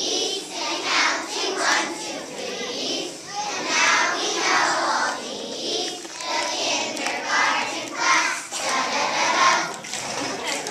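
A kindergarten class of young children singing together as a group.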